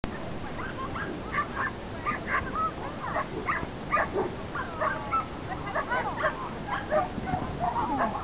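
Dogs barking over and over, several short barks a second, some with a higher whining edge.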